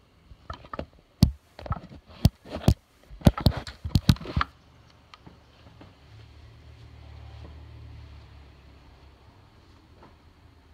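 Phone being handled and set down on a hard surface: a quick series of sharp knocks and clunks through the first four and a half seconds. After that there is only a faint low hum, with a few light taps.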